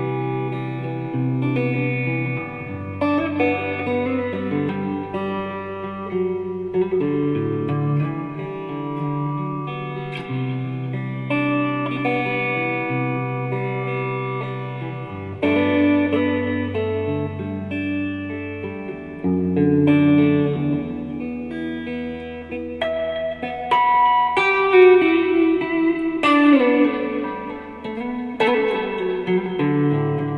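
Electric guitar played through an amplifier: held chords and picked notes that change every second or two, moving into busier, louder single-note melodic lines in the last few seconds.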